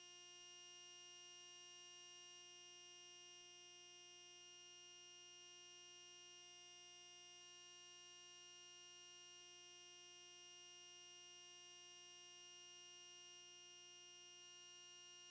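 Near silence with a faint, perfectly steady electronic hum made of several fixed tones.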